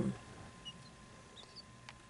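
Newly hatched quail chick giving a few faint, short, high-pitched peeps.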